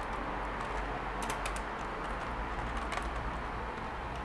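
Typing on a computer keyboard: irregular key clicks in short runs, over a steady low hum.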